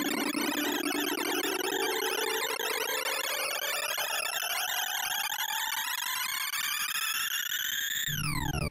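Sorting-algorithm sonification from ArrayVisualizer as a min heap sort runs on 2,048 numbers: a dense stream of synthesized beeps, one for each array access. The tones scatter over a pitch that rises steadily and peaks near the end, as the sort finishes.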